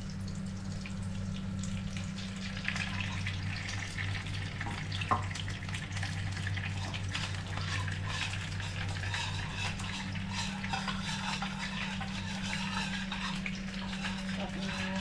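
Kitchen work over a low steady hum: a steady hiss with many small crackles, like food cooking in a pan or running water, and one sharp utensil clink about five seconds in.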